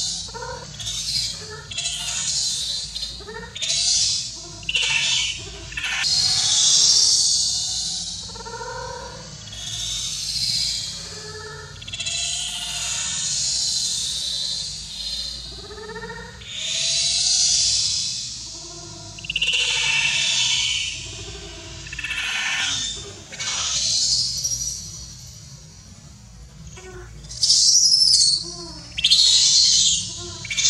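Baby macaque screaming in repeated high-pitched cries, some long and drawn out, with shorter squeaky whimpers between them: the distress cries of an infant begging its mother for milk.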